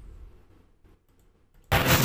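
Mostly quiet at first, then about 1.7 seconds in a sudden loud burst of radio-tuning static from a sound-effect library starts playing back, the opening of a radio spot being mixed.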